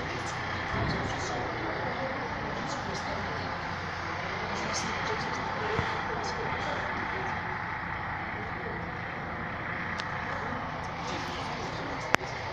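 Steady noise of a railway yard, with voices murmuring in the background and a few faint clicks.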